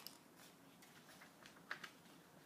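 Faint rustling and small clicks of a picture book's paper pages being handled and turned, with a sharper tap near the end.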